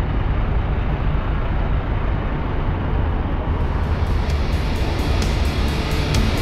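Fire truck engines running with a steady low rumble. About three and a half seconds in, rock music with a steady beat comes in over it.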